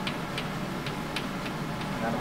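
Light, sharp clicks, about two or three a second at uneven spacing, over the steady background noise of a room.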